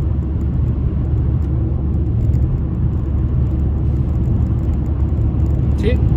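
Steady low rumble of road and engine noise inside the cabin of a car driving at motorway speed.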